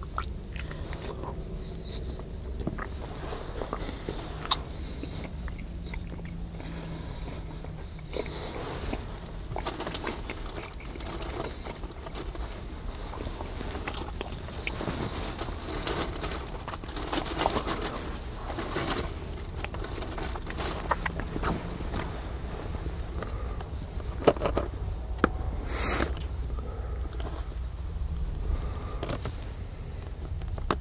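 Close-miked chewing and biting of turkey bacon and eggs, wet mouth sounds with irregular crunches, and a few sharp clicks over a steady low rumble.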